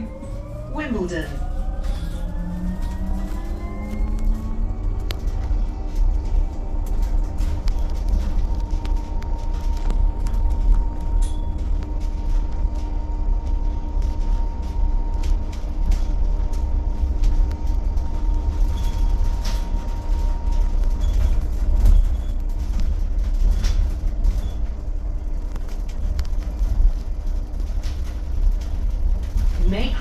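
Inside a BYD-ADL Enviro200EV battery-electric single-deck bus pulling away: the electric traction motor's whine rises in pitch over the first few seconds, then holds steady as the bus runs at speed, over a constant low road and tyre rumble.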